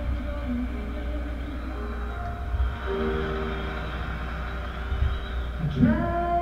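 Recorded music played back over a speaker: long held chords that become fuller about halfway through, over a steady low hum.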